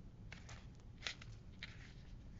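Faint handling of paper: a few short, soft rustles and scrapes, the loudest about a second in, as pages or cards are moved by hand.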